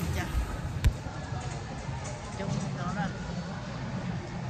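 Voices and murmur echoing in a shopping mall's hall, with one sharp thump just under a second in, the loudest sound.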